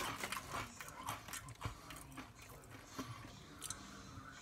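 Mouth chewing kettle-cooked potato chips: irregular crunches, thicker in the first second or so and thinning out toward the end.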